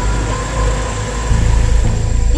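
Water rushing over the rocks of a shallow stream, a steady dense hiss; a heavier low rumble comes in louder about a second in.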